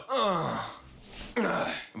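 A man's drawn-out groan, falling in pitch, followed by breathy exhaling.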